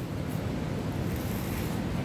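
Steady low rumble of outdoor background noise: wind on the microphone mixed with traffic on a busy street.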